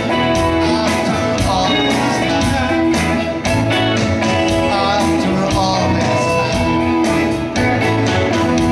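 A live band playing a song with a steady beat: guitars and fiddle, with several voices singing together.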